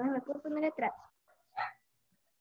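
A dog whining over a video call's audio: one long, wavering pitched call that stops about a second in, then a short sound about a second and a half in.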